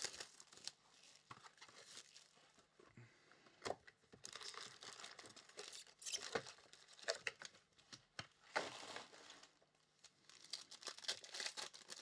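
Foil-wrapped Panini Chronicles trading-card packs crinkling and tearing as they are pulled from the box and one is ripped open, in short, faint, irregular bursts.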